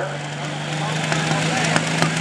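Light pro stock pulling tractor's diesel engine running steadily at the line, its pitch rising slightly about a third of the way in, with a few sharp clicks over it. The engine is running rough and will not smooth out.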